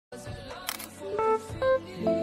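A camera shutter click sound effect, heard as a quick double click, followed by the first few separate notes of background music.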